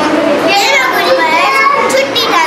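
A young girl talking, with other children's voices around her.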